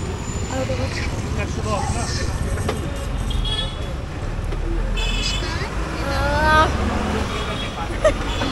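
Roadside traffic noise: a steady low engine rumble that gets heavier about halfway through, with a couple of short vehicle horn toots around three and five seconds in.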